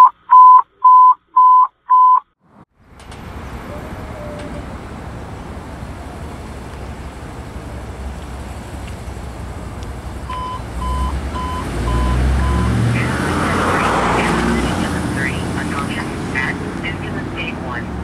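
Electronic alert beeps, a run of five loud ones at one pitch about two a second. Then the engine of a Ford E-series-based ambulance running as it pulls away, louder around the middle, with a second, quieter run of five beeps about ten seconds in.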